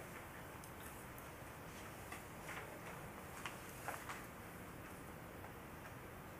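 Quiet room tone with a handful of faint, irregularly spaced clicks and rustles from papers being handled on a table.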